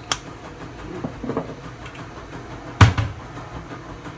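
Kitchen handling noises over a steady low hum: a sharp click at the start, a few faint knocks around a second in, and one loud knock about three seconds in.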